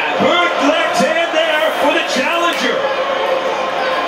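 A man speaking over crowd noise, the sound of the boxing broadcast commentary.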